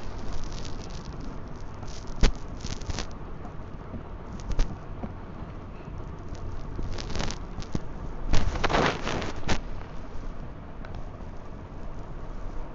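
Plastic soyabean packet crinkling and rustling as it is handled, in irregular bursts with the longest and loudest about eight and a half to nine and a half seconds in.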